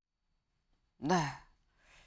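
Silence for about a second, then a woman says a single falling "네" (yes) and draws a short, faint breath near the end.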